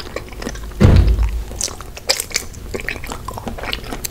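Close-miked eating sounds: one loud bite about a second in, then chewing with small crunchy clicks and crackles.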